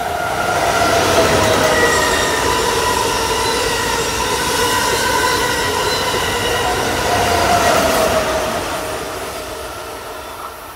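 Amtrak Acela Express high-speed electric trainset passing close by at speed: a loud, steady rush of wheels on rail and air. A whine drops in pitch as the front power car goes by and again near the end as the rear power car passes, then the sound fades as the train pulls away.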